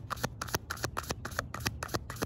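A tarot deck being shuffled by hand: a quick, even run of card slaps and flicks, about seven a second.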